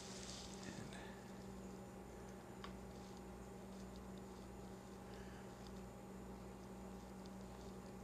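Very quiet room tone with a steady low electrical hum, and a few faint light clicks from a small plastic device being handled.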